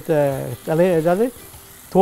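A man speaking in two short phrases over a steady faint sizzle of fish masala frying in a clay pot, stirred with a wooden spatula.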